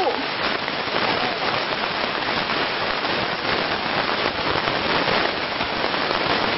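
Heavy rain falling steadily, a dense crackling patter of drops.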